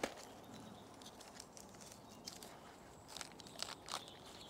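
Faint crackles and small snaps of velvet shank mushrooms being picked by hand from a tree trunk, with a short run of sharper clicks near the end.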